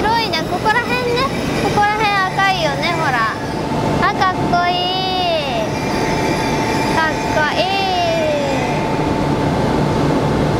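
E6 series Komachi Shinkansen train moving slowly along the platform with a steady hum. A young child's high-pitched voice squeals and calls over it, most in the first half.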